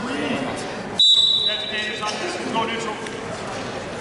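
A referee's whistle blown once about a second in: one shrill, steady blast lasting about a second, which in wrestling stops the action.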